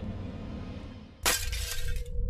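A low rumbling ambience, then about a second in a sudden loud glass-shattering sound effect that crashes and fades quickly, leaving a steady low tone ringing on.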